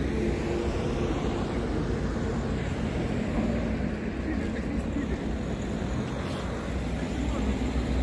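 Steady road traffic noise from passing cars, with wind buffeting the phone's microphone.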